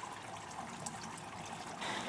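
Faint steady hiss with no distinct events.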